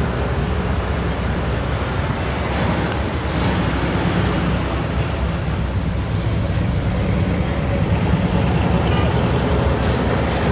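1970 Chevrolet Chevelle SS's V8 running at low speed as the car cruises past and turns, a steady low exhaust note that gets a little louder near the end as it passes closest, over street traffic.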